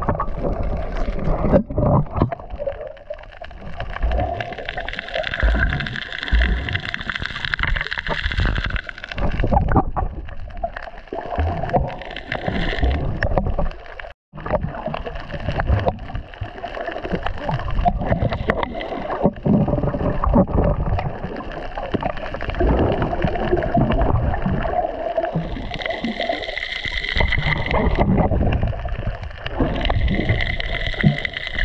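Underwater sound as picked up by a camera in a waterproof housing: water rushing and gurgling around the swimming diver, with irregular low knocks from the housing and gear. It cuts out briefly about halfway through.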